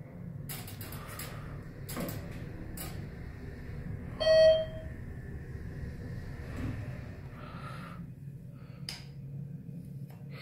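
A steady low hum inside a ThyssenKrupp hydraulic elevator car. About four seconds in, one short electronic beep from the elevator's controls, with a few faint clicks around it.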